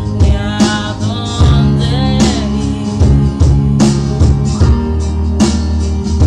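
A song with guitar and a steady beat, a voice singing over it in the first half.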